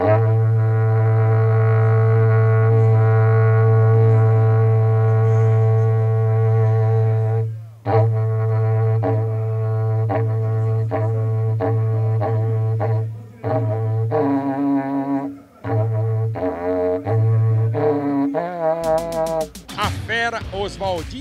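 Berrante, the Brazilian cattle-horn trumpet, blown in one long low call held for about seven and a half seconds. It then breaks into a series of shorter blasts, the note stepping up and back down between them.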